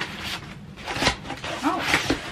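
Gloved hands pulling open the flaps of a cardboard moving box: cardboard scraping and crackling in short strokes, the sharpest about a second in and again near the end.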